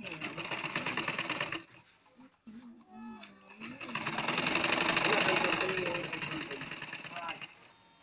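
Butterfly sewing machine stitching: a fast, even clatter of the needle mechanism in two runs, a short one of about a second and a half at the start and a longer, louder one from about four seconds in. Voices talk between and over the runs.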